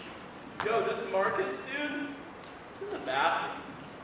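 Speech only: a voice speaking a few short phrases, quieter than the on-microphone dialogue around it.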